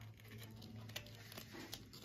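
Faint clicks and light rustling of hands handling and fitting a thin disc against a water pump's impeller face, the sharpest click about a second in, over a steady low hum.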